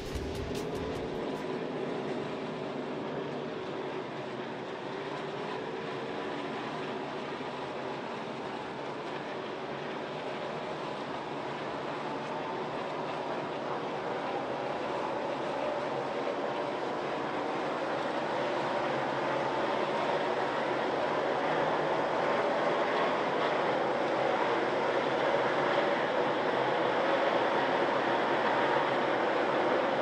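NASCAR Cup Series cars' V8 engines running on track as a dense, steady blend. Their pitch climbs slowly and the sound gets louder toward the end.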